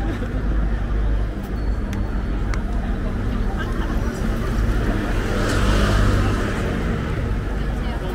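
Road traffic on a busy city street: a steady engine hum, with a vehicle passing close by and loudest about six seconds in.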